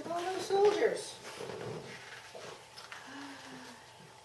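A woman's voice speaking softly in the first second, then a quieter stretch with only faint low sounds and a brief hum about three seconds in.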